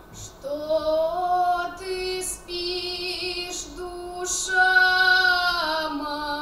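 A boy singing a folk song solo into a microphone, with his unbroken treble voice holding long, steady notes.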